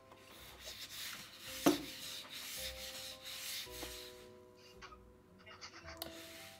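Rubbing and scuffing as a long black drainpipe section is handled and pressed against a wool blanket, with one sharp knock about a second and a half in; the scuffing dies away after about four seconds.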